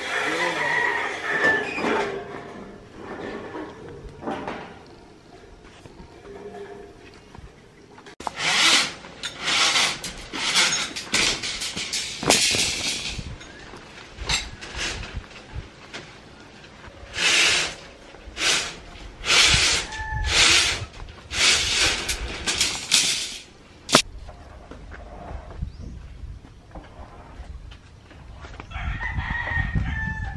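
Long steel purlins and bars scraping and clanking as they are slid off a truck bed and handled, in a run of short, loud bursts through the middle of the clip. A rooster crows in the background.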